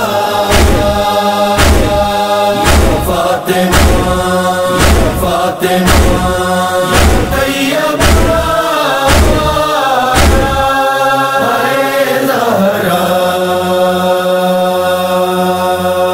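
Noha chanting: a male voice sings over a sustained, held vocal drone, with a low beat about once a second. The beat stops about ten seconds in, and the drone carries on alone.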